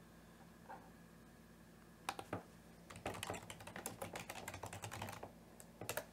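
Quiet typing on a computer keyboard: a couple of keystrokes about two seconds in, then a quick run of keystrokes lasting about two seconds, and one last keystroke near the end.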